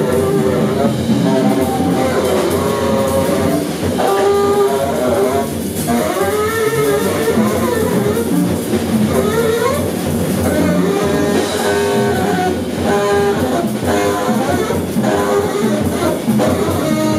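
Live free-jazz trio playing: saxophone lines that bend and slide in pitch over busy drum kit and plucked double bass, continuous and dense.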